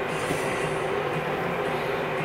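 A steady, even rushing noise with a faint low hum underneath.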